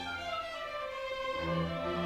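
Symphony orchestra with its strings playing held notes in a cello concerto; the low bass notes fall away early on and come back in about three-quarters of the way through.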